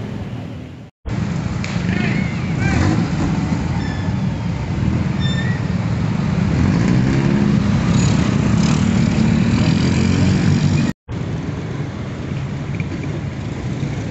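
Street traffic: a stream of motor scooters and motorcycles running past, a dense steady engine drone that is loudest in the middle stretch. The sound drops out briefly about a second in and again near eleven seconds.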